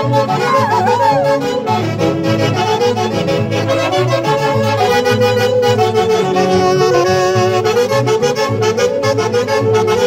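Huaylarsh played by an Andean orquesta típica, a saxophone section carrying the melody in unison over a steady beat.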